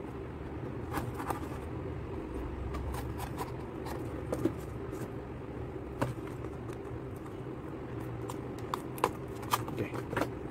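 A kitchen knife scraping along and slitting a small cardboard box open, with scattered short taps and scrapes as the box is handled, over a steady low hum.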